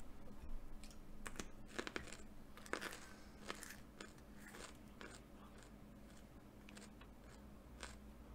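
A pencil being sharpened: faint, irregular crunching scrapes in short strokes, thickest in the first half and thinning out toward the end.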